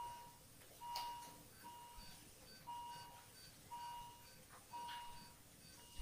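Faint electronic beeping from a bedside patient monitor: a single steady tone about half a second long, repeating roughly once a second. A soft click comes about a second in.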